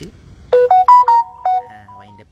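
Phone ringtone: a short electronic melody of about six quick, clean notes, starting about half a second in and stopping after about a second.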